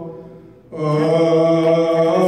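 Men chanting Ethiopian Orthodox liturgical chant (zema) in slow, held notes. The chant dies away at the start, pauses for under a second, then resumes at full strength.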